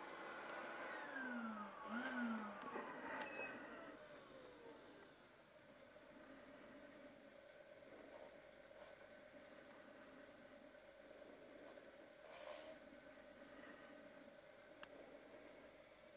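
Dust extractor switched off and winding down, its motor whine falling steadily in pitch over the first four seconds or so. After that only a faint steady hum remains, with a brief soft rustle about twelve seconds in.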